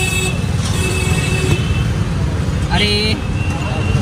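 City street traffic noise heard from an open e-rickshaw at the roadside: a steady low rumble of passing vehicles, with a couple of held high tones in the first half.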